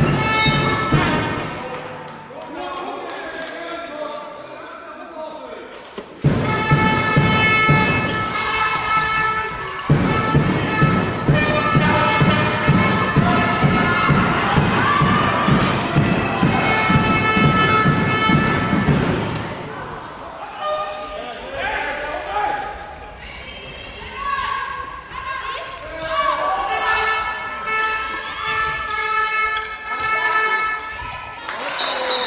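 A handball bouncing on a sports-hall floor during play, with thuds echoing around the large hall. Long held tones sound over it for much of the time, quieter for a few seconds near the start.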